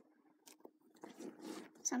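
Faint, soft cutting and tugging sounds of a scalpel slicing through the membrane between a rabbit's skin and carcass as the hide is pulled free, after nearly a second of near silence. A voice starts just before the end.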